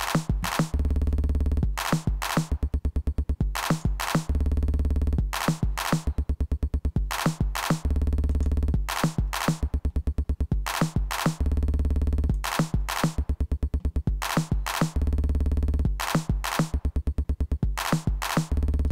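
Live-coded TidalCycles drum loop: a bass drum, clap and snare figure played twice, then a quick run of glitch sample hits, cycling over and over.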